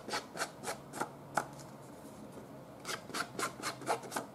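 Distress ink pad swiped along the edges of a sheet of patterned paper to ink them. Each swipe is a short scratchy rub, about three or four a second, in a run at the start and another near the end, with a pause of about a second and a half between.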